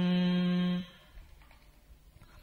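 A voice chanting verse holds the final syllable of a line on one steady note, which stops just under a second in and is followed by a quiet pause.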